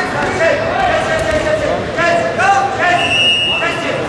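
Several voices shouting and talking in a large, echoing sports hall, with a short, steady high tone about three seconds in.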